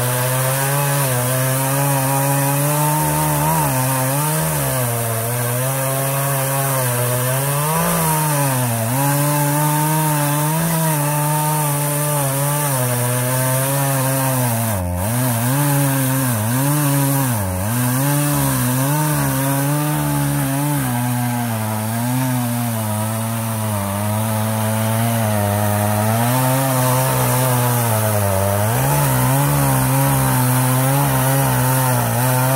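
Partner 351 two-stroke chainsaw running under load as it cuts through a thick log, its engine pitch sagging briefly now and then as the chain bites. The chain is somewhat dull and runs slowly, so the cut goes slowly.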